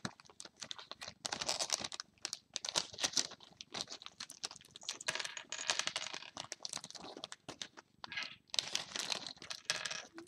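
A plastic LEGO polybag crinkling as it is handled and shaken out, with small plastic LEGO pieces clicking as they drop onto a tabletop.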